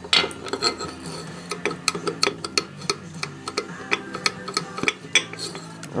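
A string of light metallic clicks and clinks, irregular and several a second, from a steel feeler gauge and a piston being handled against the bare cast-iron engine block while piston-to-wall clearance is checked.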